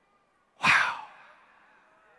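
A man lets out a short, breathy "wow" like a sigh, about half a second in, close on a headset microphone.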